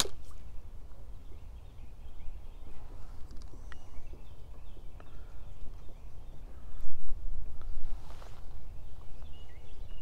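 Outdoor lakeside ambience: a steady low wind rumble on the microphone, with faint bird calls scattered through it. A sharp click comes at the very start.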